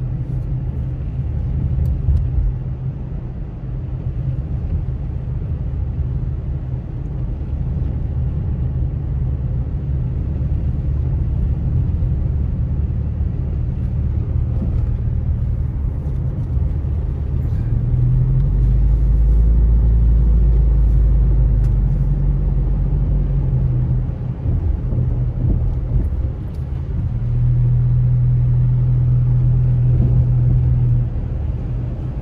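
Car driving on a rain-wet road, heard from inside the cabin: a steady low rumble of engine and tyres that grows louder from a little past halfway and again near the end.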